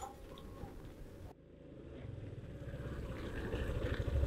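A motor scooter's small engine running, its low rumble growing louder over the last two seconds.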